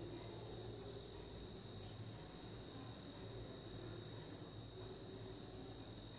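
A faint, steady high-pitched whine that holds one pitch throughout, over a faint low hum.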